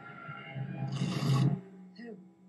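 A low, pitched drone from a TV drama's soundtrack swells with a rising hiss, then cuts off suddenly about one and a half seconds in.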